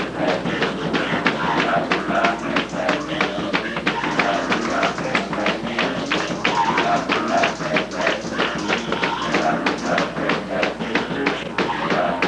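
Gospel praise break: fast, steady hand clapping and tambourine, about four strokes a second, under voices singing through a microphone.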